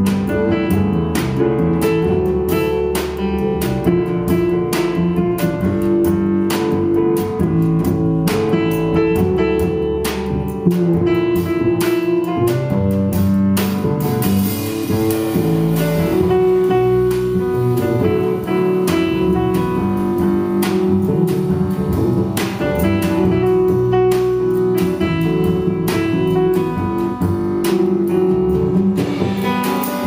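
Jazz piano trio playing an instrumental: grand piano over plucked double bass, with drums and cymbals keeping time.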